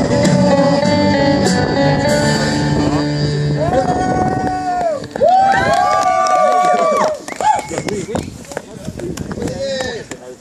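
A live band with guitar playing. Near the middle, long held notes with pitch glides take over, and after about seven seconds the music dies down to people's voices.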